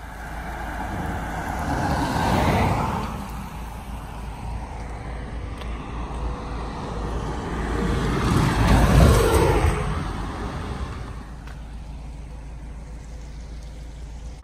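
Road traffic passing by: a car goes past about two seconds in, then a small box truck passes more loudly about nine seconds in, its low rumble fading away afterwards.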